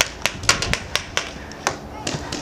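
Paintball marker firing a quick, uneven string of about eight sharp pops in under two seconds.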